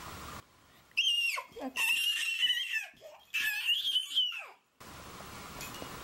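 A high-pitched squealing voice: several long squeals with swooping pitch over about three and a half seconds, some ending in a steep downward slide.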